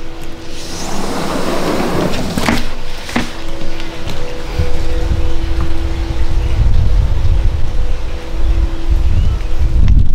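Wind buffeting a handheld phone microphone, a deep rumble that builds from about halfway through, with handling clicks and a steady low hum with a second, higher tone underneath.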